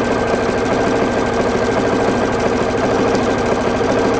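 Pfaff creative icon computerized sewing machine running at a steady speed on its Start-Stop control, the needle stitching in a rapid, even rhythm over a constant motor hum.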